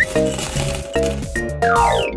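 Cartoon sound effect of a stream of candies clattering out of a gumball machine into a paper bag, over bouncy background music; a falling sweep in pitch follows near the end.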